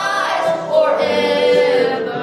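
A woman singing a hymn with guitar and mandolin accompaniment, holding a long note in the second half.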